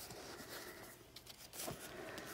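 Faint rustling of paper and card as hands handle and turn the pages of a thick handmade junk journal, with a slightly louder soft tap or rustle late on.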